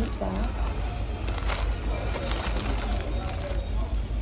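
Paper fast-food bag rustling and crinkling in a run of short, sharp rustles as McShaker fries are shaken inside it with their sour cream seasoning, over a steady low hum with background voices and music.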